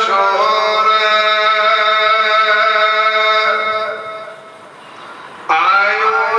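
A voice chanting Gurbani in long, held, sung notes over a steady low drone. The chant fades away about four seconds in, and a new phrase starts with a rising note at about five and a half seconds.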